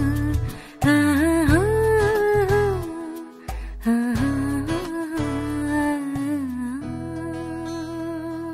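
Wordless 'ha-ha-ha-ha… aa' vocalise sung to the end of a Malayalam film song, over bass and plucked guitar. It comes in two phrases, the second ending in a long held note that fades near the end.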